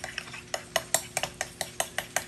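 Metal spoon stirring chocolate syrup into ricotta in a small ceramic bowl, clinking quickly against the bowl about six times a second.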